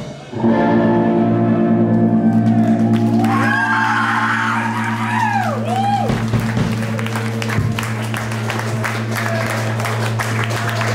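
A live rock band breaks off and lets a final chord ring out through its bass and guitar amplifiers, held steady. About halfway through, the crowd cheers and starts clapping as the song ends.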